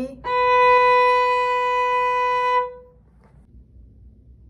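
Violin bowed firmly on one steady B, held for about two and a half seconds and then released. It is the landing note of a first-finger shift down from third position to first position.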